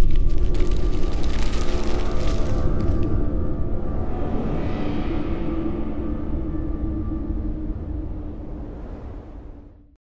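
Outro logo sting: a deep cinematic boom with crackling for the first few seconds, settling into a low droning tone that slowly fades out.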